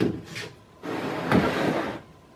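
A white melamine mould board handled on a workbench: a knock, then a scraping rub of board on bench lasting about a second.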